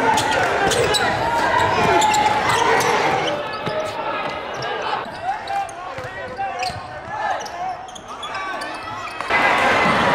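A basketball bouncing on a hardwood gym floor with short sharp knocks, over the voices of a crowd talking and shouting in a large gym. The crowd noise drops about three seconds in, then jumps back up suddenly near the end.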